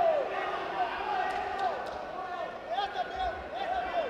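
Men shouting from around the cage in an arena hall, a string of short high-pitched calls while the fighters clinch. A dull low thump comes about three seconds in.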